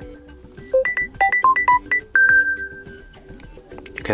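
Samsung Galaxy phone ringtone preview playing from the phone's speaker: a short melody of bright, bell-like synth notes, ending in one long held note that fades out.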